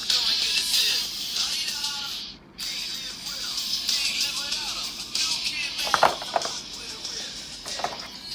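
Music with a vocal, played from the drivers of JBL Tune on-ear headphones to show that both sides work, sounding thin with little bass. It drops out briefly a little past two seconds. A few sharp clicks come about six seconds in and near the end, as the headphones are handled in their plastic tray.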